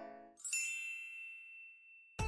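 A single bright chime-like ding sound effect, struck about half a second in and ringing out as it slowly fades. Just before it, the last held chord of a song dies away.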